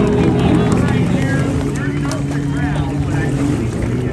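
Stand-up jet ski engine running out on the water, its droning note dropping in pitch about a second in and holding lower as the ski slows, with people talking over it.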